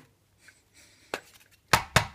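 Plastic knocks of a toy foam-dart blaster jostled in its plastic holster: after a near-quiet first second, three sharp clicks, the last two loudest.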